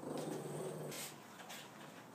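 Boston terrier giving a low growl for about a second while playing, followed by a short sharp breath noise.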